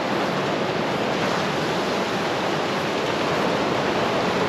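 Surf breaking on an offshore rock reef, heard as a steady, even rushing of water.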